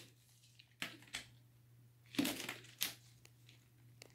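A few brief, quiet rustling and crinkling noises, spaced out over a faint steady low hum.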